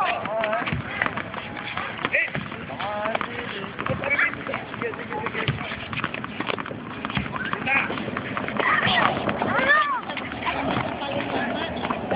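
Several tennis balls bouncing irregularly off racket strings and the hard court, a scatter of overlapping taps, as a group of children practise bouncing the ball with their rackets. Children's voices, calls and squeals run over the tapping.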